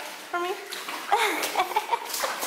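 Shoes splashing and sloshing in shallow standing water on a flooded floor.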